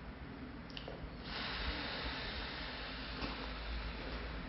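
A person blowing out slowly and steadily in a controlled exhalation, starting about a second in after a held breath, as part of a breathing exercise.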